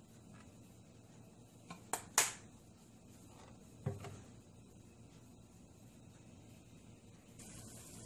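Three quick, sharp clicks about two seconds in and a duller knock a couple of seconds later, from the plastic cooking-oil bottle and the cookware being handled on the stovetop. A faint steady hiss comes in near the end.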